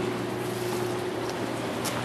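Evaporative swamp cooler's blower running: a steady rush of air with a low, even hum.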